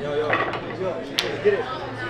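A single sharp click of a pool shot on a billiard table a little over a second in, over the chatter of voices in the hall.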